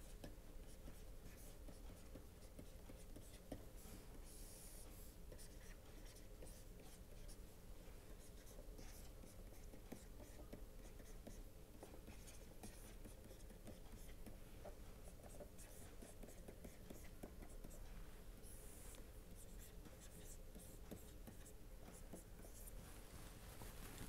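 Faint scratching and tapping of a stylus writing on a tablet, in short strokes, over a steady low hum.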